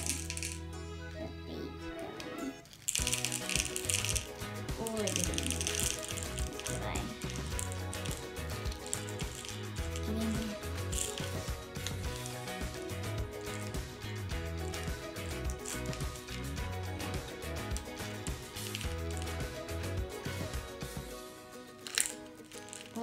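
Background music, over small plastic Beados beads clicking and rattling as they are dropped through a funnel into a plastic bead pod.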